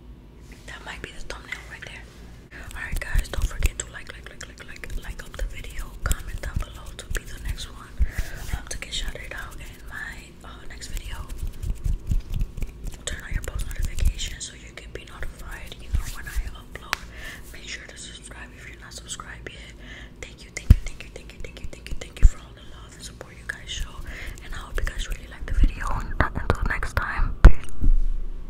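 A person whispering close to the microphone, with two sharp knocks about three-quarters of the way through.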